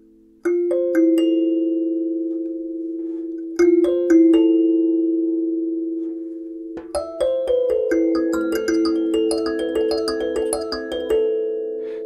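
Sansula, a kalimba mounted on a drum-skin frame, plucked with the thumbs while one corner rests on a djembe head, which makes it much louder. A few long-ringing chords come first, then a quicker run of notes from about seven seconds in.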